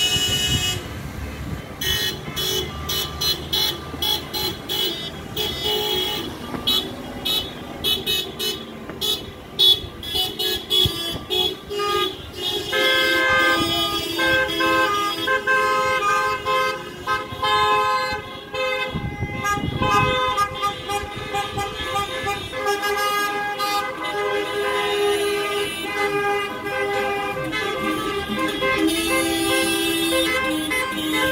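Car horns from a slow line of protest cars honking: rapid short beeps for the first twelve seconds or so, then many horns held in long overlapping blasts. A vehicle rumbles past about two-thirds of the way through.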